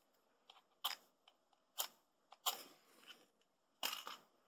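Lips smacking on a cigar while puffing: about seven soft, short smacks and clicks at irregular intervals.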